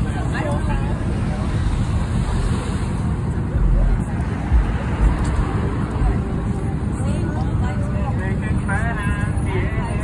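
Steady road-traffic rumble with wind buffeting the microphone, a few heavier low thumps in the middle, and voices talking over it near the start and toward the end.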